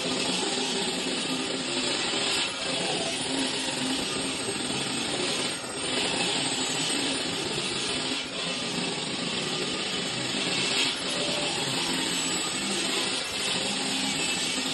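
Handheld electric die grinder running at high speed and cutting into stone: a steady, hissing whine that dips briefly a few times.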